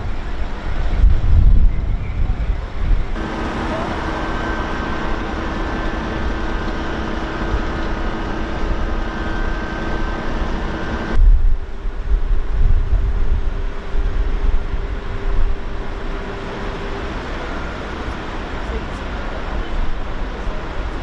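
Outdoor ambience with wind buffeting the microphone in gusts and a general traffic rumble. A steady mechanical hum runs under it for several seconds at a time and changes pitch twice.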